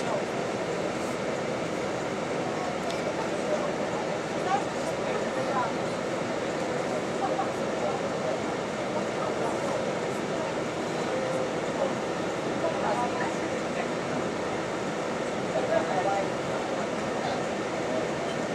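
Steady hum inside a stationary bus, its engine idling, with faint indistinct voices of passengers.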